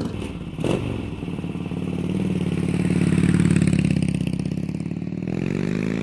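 Harley-Davidson Sportster 1200 Custom's 1200cc Evolution V-twin, fitted with Screamin' Eagle slip-on mufflers, running with a steady beat. A short clack comes about half a second in, the exhaust swells louder in the middle, and engine speed begins to rise near the end.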